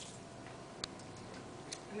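Quiet room with a faint steady hum and two short, faint clicks a little under a second apart.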